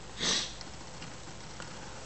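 A person sniffing once, briefly, about a quarter of a second in: a nasal sniff from someone with a cold. Faint steady background noise lies under it.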